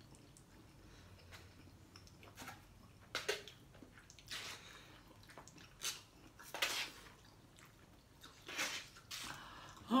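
A person chewing a mouthful of spicy instant noodles, with short soft eating sounds every second or so. The sounds are faint.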